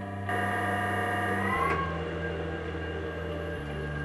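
A motor on a variable speed drive whines, rising in pitch for about a second and a half and then cutting off: it is sped up past its safe maximum speed limit, and the drive trips into safe torque off so the motor coasts down freely. Soft background music with slowly changing low chords plays throughout.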